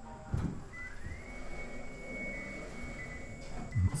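First-generation Nissan Leaf moving off on electric power: a thump, then a whine that rises in pitch for about half a second and holds steady. The car sounds fine with its doors off and hatch open, with no terrible noises.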